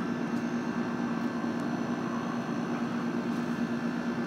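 Steady outdoor background noise: a constant low mechanical hum over an even hiss, with no single event standing out.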